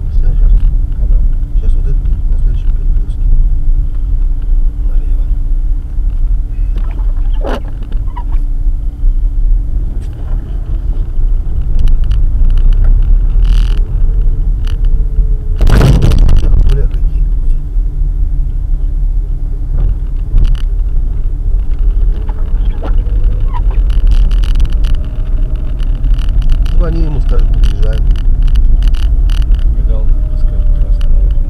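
Inside-the-cabin drone of a car driving on snowy streets: engine hum and tyre rumble, with a loud thump about halfway through and the engine note slowly rising later on.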